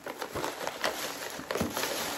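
Tissue paper and plastic treat packaging rustling and crinkling in a run of irregular crackles as a hand rummages in a gift box.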